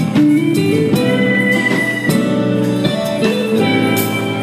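Live worship band playing, with bass guitar, electric guitar and acoustic guitar to the fore and a violin in the band.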